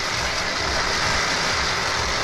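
Steady rushing noise of a sky bike coasting down its overhead steel cable: the pulley carriage running along the cable, with air rushing past.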